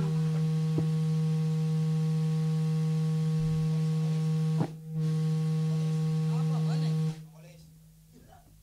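A band's final note, one low pitch held steady for about seven seconds, broken by a click a little over halfway through and then cut off, leaving the room quiet but for faint noises.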